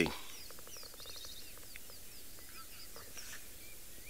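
Birds calling in the bush: a scatter of faint, short high chirps and little falling whistles, with a brief fast trill about a second in.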